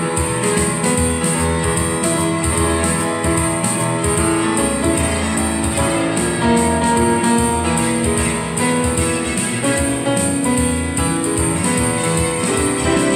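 Piano playing an instrumental break in a slow ballad, with no singing: held chords and a melody line, steady in loudness.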